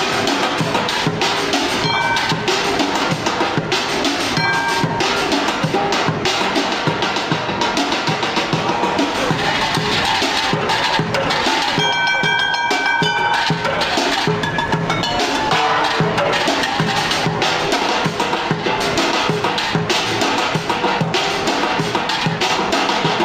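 Fast, dense drumming on an improvised kit of upturned metal cooking pots, steel trays and plastic buckets, the metal pans now and then ringing out in clear tones.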